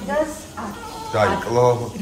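Newborn baby crying in short wavering wails, the longest and loudest near the end, with adult voices alongside.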